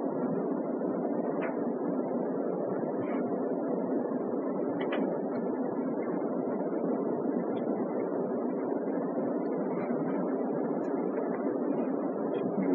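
Steady, even background noise from the hall, with a few faint clicks and no speech.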